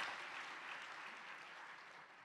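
Audience applause fading away.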